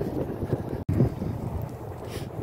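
Wind buffeting a phone microphone: an uneven, gusty low rumble, broken by a brief dropout a little under a second in.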